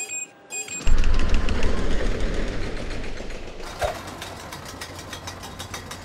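Designed intro sound effects for a logo and title animation. Brief glitchy noise bursts give way to a deep bass hit about a second in that fades slowly. From about three and a half seconds, rapid, regular ratchet-like ticking runs over a low hum.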